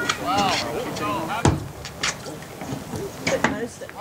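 Outdoor soccer-field sound: short shouts from spectators and players, with a sharp thud about one and a half seconds in and lighter knocks near two and three seconds in.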